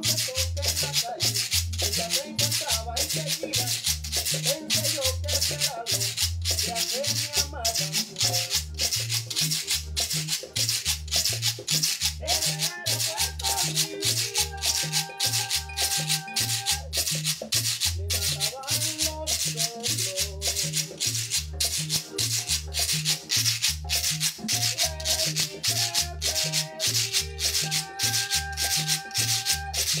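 A guacharaca, the ridged Colombian scraper, scraped in a fast, steady rhythm along with recorded music that has a bass line and, mid-way and near the end, held melody notes.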